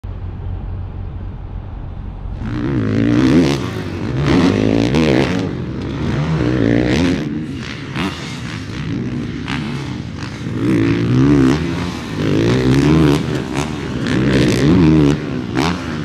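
Motocross dirt bike engine revving hard and backing off over and over as it is ridden over jumps, the pitch repeatedly rising and falling. Only a low rumble is heard for the first couple of seconds before the engine comes in.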